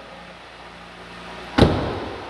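The driver's door of a 2016 Jeep Wrangler Unlimited being shut: one solid slam about a second and a half in. Under it runs the low, steady hum of the idling engine.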